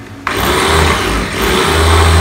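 Small electric chopper's motor starting suddenly about a quarter second in and running steadily at speed, its blade grinding soaked rice and water in the glass jar.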